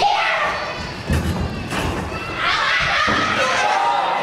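Several heavy thuds on a wrestling ring a little after a second in, between loud shouts and yells from the wrestlers and crowd in a hall.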